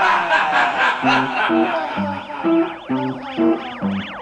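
Live band music starting up about a second in: short low notes in a bouncing pattern, overlaid with synthesizer tones sweeping rapidly up and down like a siren.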